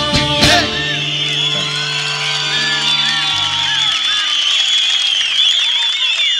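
A live band ends a song on one last loud hit about half a second in. The held final chord rings on and fades away over the next few seconds while a large crowd cheers and whoops.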